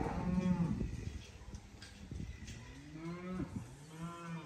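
Angus heifers mooing: a low call right at the start and another in the second half that runs on past the end, each arching up and falling in pitch.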